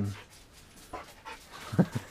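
A dog panting, with a quick run of short breaths in the last second.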